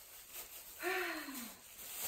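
A woman's short sigh, falling in pitch, about a second in, over faint rustling of a plastic bag.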